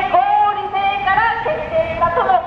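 A single person's voice in long held notes that glide up and down, sung or drawn out like singing.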